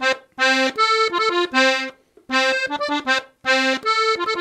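Three-row diatonic button accordion in F (FBbEb) playing a norteño melody of short, detached notes and chords. The phrase is played twice, with a brief break about halfway.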